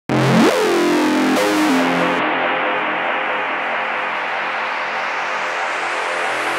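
Electronic music intro of sustained synthesizer chords with no beat: a falling pitch glide opens it, the treble drops away about two seconds in, and then the top end rises slowly as a filter sweep.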